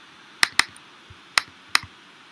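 Four short, sharp clicks from computer input while text is edited on screen, two close together in the first second and two more later, over faint room hiss.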